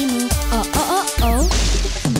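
Advertising jingle music with a sung melody. About halfway through, a rising whoosh sound effect leads into a burst of hiss.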